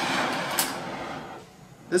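Oxy-acetylene torch burning acetylene alone, with no oxygen yet, giving a sooty flame: a rushing hiss that fades over about a second and a half.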